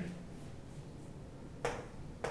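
Chalk on a chalkboard: a quiet stretch, then one sharp chalk tap near the end as the next structure is drawn.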